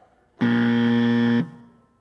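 Quiz countdown time-up buzzer: a single steady low buzz lasting about a second, sounding as the on-screen timer reaches zero.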